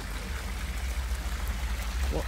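A pool bubbler jet in a shallow sun shelf splashing steadily, a continuous trickling, splashing water noise. A steady low rumble runs underneath.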